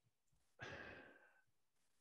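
A man's audible sigh, one breath out lasting just under a second and fading away.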